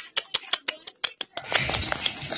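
A quick run of small, sharp clicks, close to ten in about a second and a half, followed by a softer, rustling noise.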